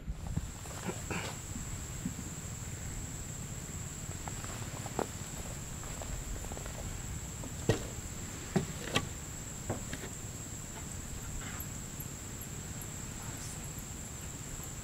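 Night insects trill in one steady, high, unbroken note, with fainter quick chirps above it later on. A few sharp knocks sound midway: footsteps on the cabin's porch steps.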